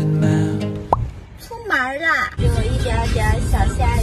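Background music cuts off about a second in with a quick rising pop sound effect and a brief wavering vocal sound. Then comes the low, steady road rumble of a car's cabin while driving, with a woman's voice starting near the end.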